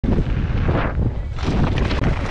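Wind buffeting a helmet-mounted camera's microphone during a fast downhill mountain-bike run, with a steady low rumble of tyres on the dirt trail underneath.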